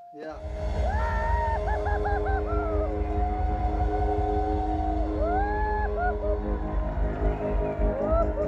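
Rock music with a band playing, cutting in sharply just after the start. It has a heavy, steady low end of bass and drums under held chords, with a melody of sliding, bending notes on top.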